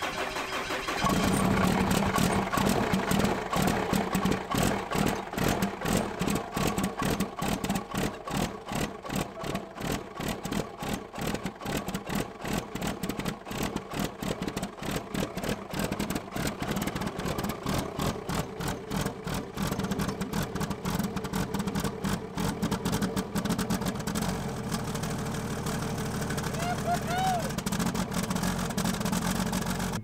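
Compound-turbocharged Cummins diesel engine catching about a second in, then running at idle with a rapid, pulsing beat that smooths out somewhat near the end.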